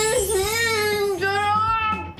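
A high-pitched voice holding two long sung notes, the first running to just past a second in and the second breaking off near the end: a drawn-out sound of delight at the taste of the food.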